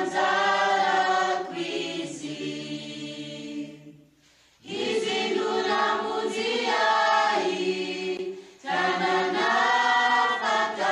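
Mixed choir singing a gospel hymn in long held notes, pausing briefly between phrases about four seconds in and again shortly before the end.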